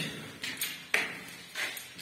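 Three footsteps on a gritty concrete bunker floor, short sudden scuffs about half a second apart, the middle one the loudest.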